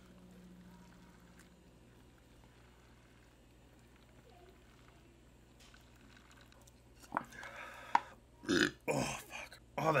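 Someone drinking sake from a juice box through a straw, faint for about seven seconds. Then the drinking stops with a sharp exhale and a burp, followed by a spoken word at the very end.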